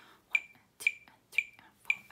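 Metronome ticking steadily at the piece's metronome mark, four short bright ticks just under two a second.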